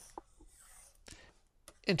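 Stylus writing on a pen tablet, a faint scratching with a few light clicks as a box is drawn by hand.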